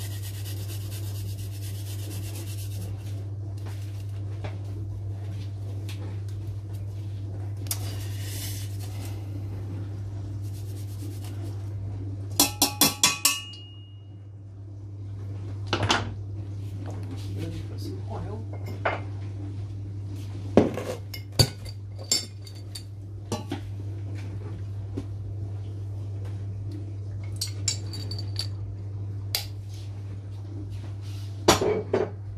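Kitchen utensils clinking and knocking against a stainless-steel pot: a quick run of about five sharp knocks about halfway through, then scattered single clinks, over a steady low hum.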